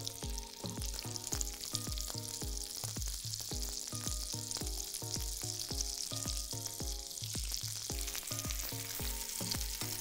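Pear wedges frying in butter in a skillet, a steady sizzle. Background music plays over it with a steady beat of about three thumps a second and held notes.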